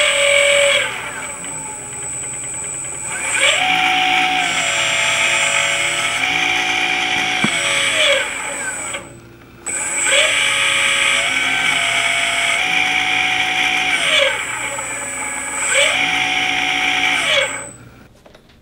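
Turnigy brushless electric motor running from a speed controller, a whine whose pitch glides up, holds at steady steps and drops again as the speed is changed from the phone. It stops briefly about nine seconds in, then runs through a similar rise and fall again before dying away near the end.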